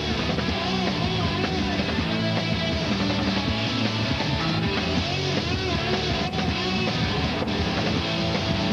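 A rock band playing punk rock with electric guitars, loud and continuous with no break.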